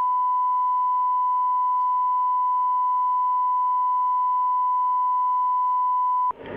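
Broadcast line-up test tone: one steady, unbroken pure tone, sent as the programme signal while the feed waits to begin.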